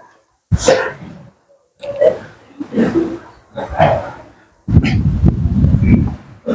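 A man's short breathy vocal sounds, like coughs or muttered breaths, in irregular bursts about a second apart, with a longer, denser one near the end.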